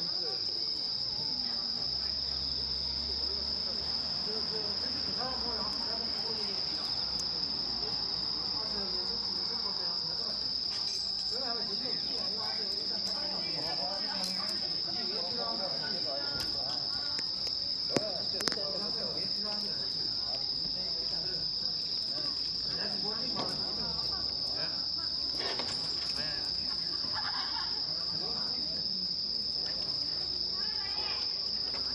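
Crickets chirring in one steady, unbroken high-pitched drone, with faint murmuring voices beneath and two sharp clicks about eighteen seconds in.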